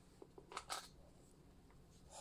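Near silence with a couple of faint ticks and a brief soft rustle about half a second in, from hands moving over a plush fabric toy.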